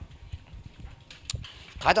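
Faint low knocks from a man moving while holding a handheld microphone, footfalls and handling noise, with one sharp click a little over a second in; a man's voice starts speaking near the end.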